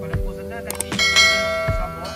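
Background music with a bright, ringing bell chime about a second in, the notification-bell sound effect of a subscribe-button animation.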